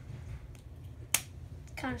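A single sharp snap about a second in, while hands work at a wrapped synthetic-fibre cosplay wig, over faint handling noise.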